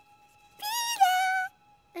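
A cartoon squeaky toy squeezed once: a single squeak of about a second that steps down in pitch halfway through, over a faint held music chord.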